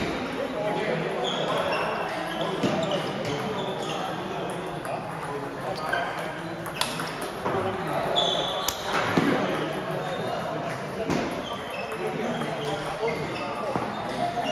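Table tennis rally: a plastic ball clicking off paddles and the table in an irregular series of sharp taps, over the chatter of voices in a large hall.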